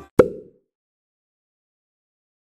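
A single short pop about a quarter-second in, dying away within a few tenths of a second, then dead silence: an editing transition sound effect between sections.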